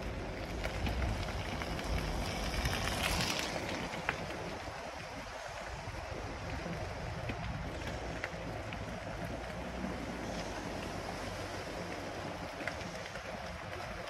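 Steady rush of wind on the microphone over the low rumble of a fat bike's wide tyres rolling on wet pavement, with a few faint ticks.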